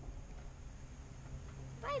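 Faint, steady wind and motion noise from a camera riding on a moving playground swing, then near the end a child's high voice calling out "bye-bye".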